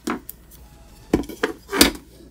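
A few sharp clicks and knocks as multimeter test probes and a Noctua 120 mm PC fan with its wires are handled on a wooden workbench, the loudest knock near the end.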